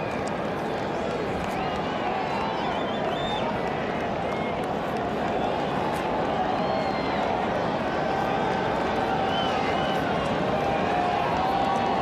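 Ballpark crowd noise: a steady din of many fans' voices, growing a little louder toward the end.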